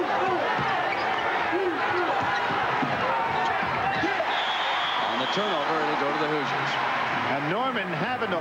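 Basketball being dribbled on a hardwood court under the steady shouting and chatter of an arena crowd, heard through an old broadcast tape recording.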